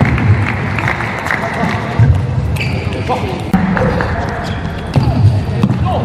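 Table tennis rally: the celluloid ball clicking sharply off the bats and table at irregular intervals, with low thuds mixed in.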